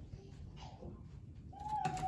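Quiet background, then near the end a long call begins as a single clear tone that slowly falls in pitch, like a bird cooing, with a couple of light clicks.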